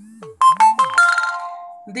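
A short electronic chime like a phone ringtone: a few quick notes about half a second in, then held tones ringing out and fading over about a second.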